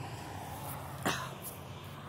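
A single short cough about a second in, over a faint steady low hum.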